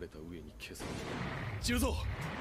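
Animated fight sound effects: a rushing noise builds from about a second in to a deep boom near the end, with a character's voice lines at the start and over the boom.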